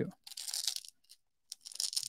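Short rustle of fabric as hands work the upper of an ASICS Trabuco Max 2 trail running shoe, followed after a brief pause by a fainter rustle.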